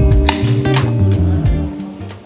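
Background music featuring guitar, with held notes over a strong bass and a few sharp hits, fading near the end.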